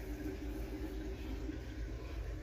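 Steady low background hum with a faint even hiss and no distinct events.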